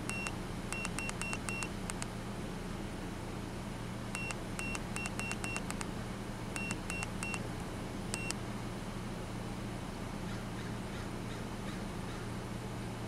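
Handheld Topdon OBD2 scan tool beeping at each button press while its menu is scrolled: short high beeps in quick runs of five, then five, then three, then a single beep. Under them runs the steady low hum of the Chevrolet Colorado's engine idling.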